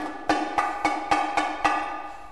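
Orchestral instrumental music from a 1964 studio recording: held notes under a crisp percussion tap that repeats about four times a second.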